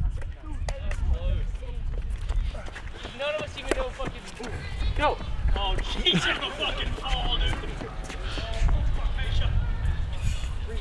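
Several young men shouting and whooping excitedly without clear words, loudest in the middle seconds, over a steady low rumble.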